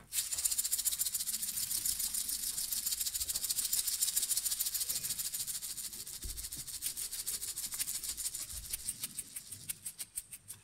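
A hand shaker played solo in a rapid, even rhythm, growing gradually softer over the second half.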